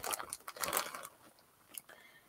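Clear plastic bag crinkling as a bagged skein of yarn is handled, dying away after about a second.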